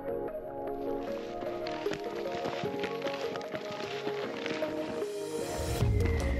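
Instrumental background music with sustained notes changing every second or so; near the end a rising swell builds and a deep bass note comes in.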